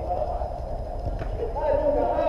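Footballers' shouts and calls to each other during play on an indoor minifootball pitch, loudest near the end, over a steady low hall rumble. A single short knock about a second in.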